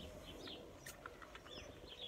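A few faint, short bird chirps over a quiet background.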